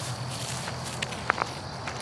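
Footsteps through tall meadow grass, with a few sharper steps a little over a second in. A steady high insect drone runs underneath.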